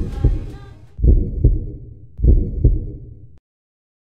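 Deep bass thumps in a heartbeat rhythm closing out the soundtrack: three double beats about a second apart, then the sound cuts off abruptly.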